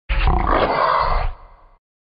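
A single animal call lasting a little over a second, then fading away.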